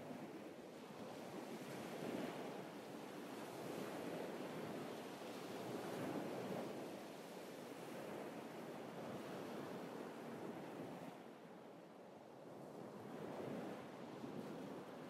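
Ocean waves washing onto a shore: a steady surf hiss that swells and eases every few seconds.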